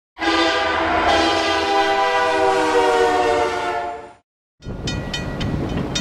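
A train horn chord of several steady notes sounds over the first four seconds and fades away. After a brief gap comes a low rumble with sharp, evenly spaced clicks about three a second.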